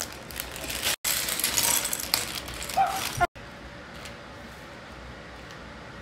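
A plastic bag of Lego pieces being opened and handled: the plastic crinkles and the small bricks click and rattle inside, cut twice by brief dropouts. After about three seconds it falls to a quieter steady hiss with a few faint clicks.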